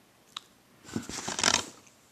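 Handling noise from a plastic DVD case being moved: a single sharp click, then about a second of crackly rustling.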